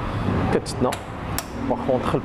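A few sharp metallic clicks from a moped's folding aluminium passenger footpeg being handled and knocking against its stop, the loudest about one and a half seconds in.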